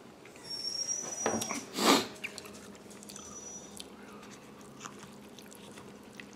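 Close-up eating noises: chewing, with a short loud rush of noise about two seconds in and faint high squeaks around it.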